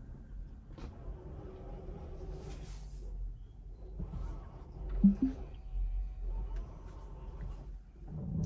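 Low rumble inside a Tesla's cabin as the car creeps into a parking space under its self-parking mode, with a few faint clicks and a short, low two-note hum about five seconds in.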